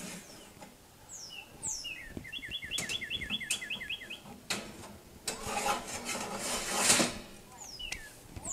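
A bird gives a few falling chirps, then a quick run of repeated chirps lasting about two seconds. After that, the expanded-metal steel top grate of a smoker's expansion rack scrapes and clanks as it is slid onto its rails inside the cook chamber, loudest near the end.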